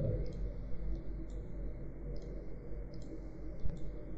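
Computer mouse clicking about five times at irregular intervals, with one sharper, louder click near the end, over a steady low hum.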